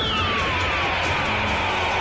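Cartoon energy-blast explosion sound effect over background music: a quick rising sweep at the start, then tones gliding downward over a continuous low rumble.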